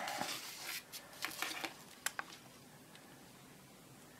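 Faint handling noise from a handheld plastic component tester and its clip leads being picked up: light rustling, then a few short, sharp clicks in the first couple of seconds.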